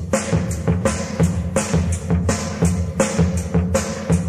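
A rock band's instrumental opening: a drum kit keeps a steady beat of about three hits a second over low bass.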